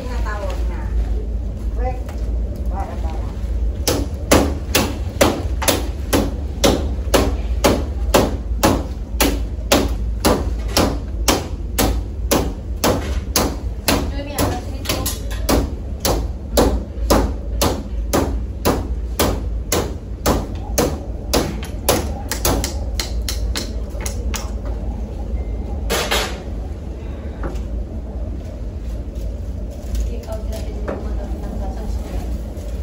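Rattan chair frame being struck again and again with a hammer, hard sharp blows about two a second for some twenty seconds as the frame is beaten apart, then one last blow a couple of seconds later. A steady low rumble runs underneath.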